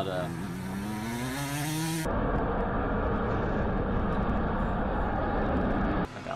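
A motorcycle engine revving, its pitch rising steadily for about two seconds. Then an abrupt cut to the steady, low-heavy engine noise of a fighter jet on a runway.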